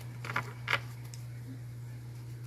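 A deck of paper cards being shuffled by hand: a few short crisp flicks in the first second, then quieter handling. A steady low hum runs underneath.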